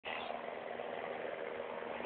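Faint, steady whir and rolling noise of a motorized single-speed cruiser bicycle being pedalled with its engine switched off, its chains still connected.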